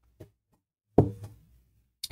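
A drink can set down on a desk: one sharp knock about a second in, preceded by a faint click.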